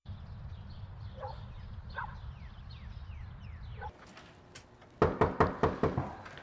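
Faint short chirps, each falling in pitch, over a low hum, then about a second before the end six rapid, loud knocks on a door.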